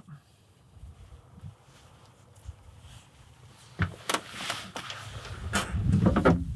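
A few quiet seconds, then rustling and handling noises with a couple of sharp knocks as pheasant carcasses are moved about on a pickup truck's tailgate.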